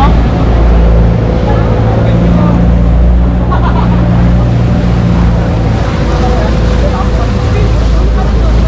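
Engine of a motorized outrigger boat (bangka) running steadily under way, a loud low drone, with water rushing past the hull.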